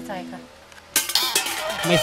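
Kitchen utensils clattering against dishes, starting suddenly and loudly about a second in, under a woman's talk.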